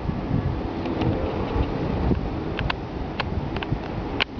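Low rumbling noise on the microphone, with a few faint clicks in the second half.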